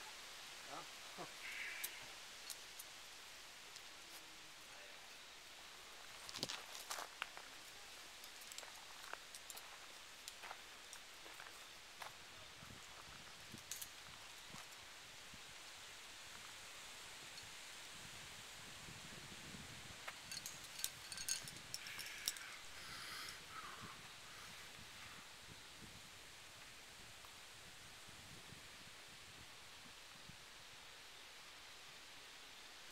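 Quiet outdoor ambience with scattered faint clicks and rustles, bunched about six seconds in and again around twenty to twenty-three seconds.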